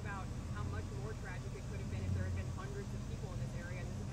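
Faint, indistinct voices over a steady low engine hum, like a vehicle idling nearby.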